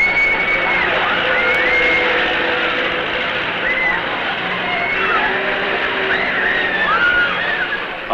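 Amusement-ride crowd noise: a steady din of voices with children's high shrieks and squeals rising and falling several times.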